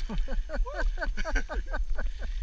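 Dog yipping and whining in a quick, even run of short calls, each falling in pitch, about eight a second.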